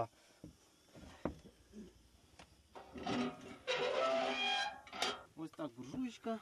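A few light knocks of firewood against a small sheet-metal wood-burning stove, then a drawn-out creak lasting a couple of seconds from about halfway through.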